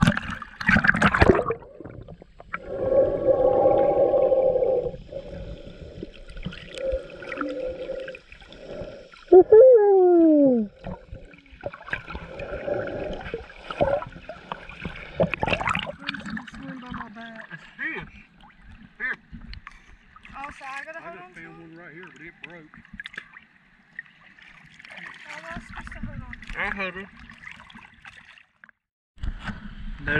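Shallow seawater splashing and sloshing around a camera held at the waterline, with muffled gurgling whenever it dips under the surface.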